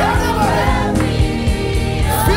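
Gospel worship song: a lead vocal and a choir singing over a band with electric bass guitar and drums keeping a steady beat.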